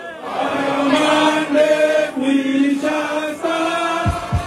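A campaign song being sung by a male lead voice, possibly with the crowd, in long held notes that step up and down in short phrases.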